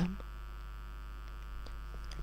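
Steady low electrical hum, a mains hum in the recording, running unchanged under a pause in the narration.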